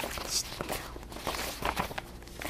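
Sheets of paper being shuffled and leafed through on a desk: soft irregular rustling with light taps and a brief swish.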